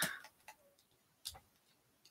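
A few faint, sharp clicks of plastic Lego pieces being handled and pressed together, the clearest a little past the middle.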